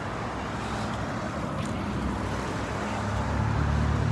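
Street traffic noise, with a motor vehicle's low engine sound growing louder near the end as it comes closer.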